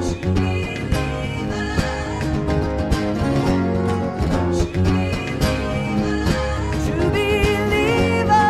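Live rock band music led by guitar, with a steady beat; a wavering melody line comes in near the end.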